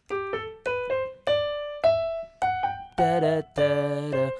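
Digital piano playing a major scale upward, one note at a time, in an uneven triplet-based rhythm: a rhythmic variation on a scale-practice exercise. In the last second the sound grows fuller, with lower notes joining in.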